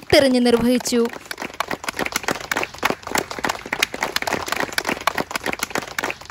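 A small group of people clapping: dense, irregular hand claps for several seconds, after a voice that stops about a second in.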